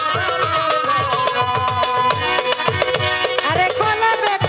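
A Bangladeshi Baul folk ensemble plays an instrumental passage: quick tabla-style hand-drum strokes with low, downward-sliding bass tones under a sustained melody line.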